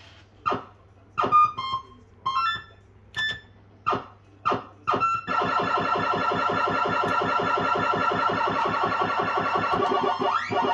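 Bell-Fruit fruit machine electronic sound effects: a string of short separate beeps and blips in the first half, then from about five seconds in a continuous fast-pulsing electronic jingle, played with the reels stopped as its credits-nudges counter rises.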